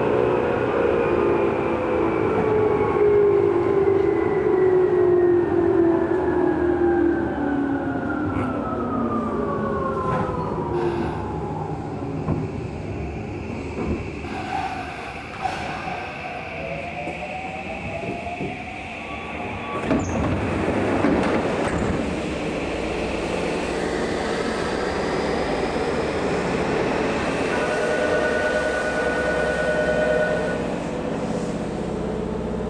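Tokyu 8500-series electric train slowing into a station: its traction motor tones fall steadily in pitch over the running noise of wheels on rail for the first dozen seconds. A sharp knock comes about twenty seconds in, then a steadier, lower running noise as the train draws to a halt at the platform.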